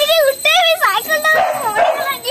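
A rapid series of short, high-pitched yipping cries, each rising and falling, turning into a noisier squeal in the second half.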